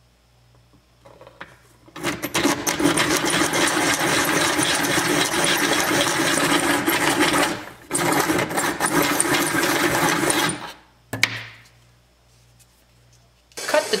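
Pencil sharpener grinding the end of a square walnut stick to a point, in two runs of several seconds each with a brief pause between.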